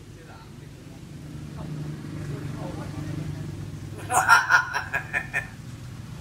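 Hill myna giving a quick burst of about eight rapid, sharp notes, about four seconds in, in a laugh-like chatter of the kind it mimics from people.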